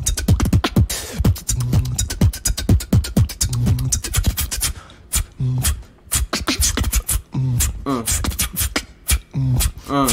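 Beatboxing: fast vocal percussion of rapid clicks and snare- and hi-hat-like hits over a deep bass tone that recurs about every two seconds. The pattern thins out about halfway through, with a few short pitched vocal glides.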